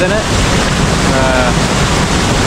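Steady, loud rush of falling water from a large waterfall, an even noise that does not let up, with a man's voice briefly near the start and again in the middle.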